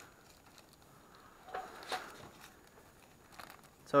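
Masking tape being peeled and thin plastic masking sheet crinkling as a freshly clear-coated car panel is unmasked. The sound is quiet and comes in a few short rustles, about one and a half to two seconds in and again near the end.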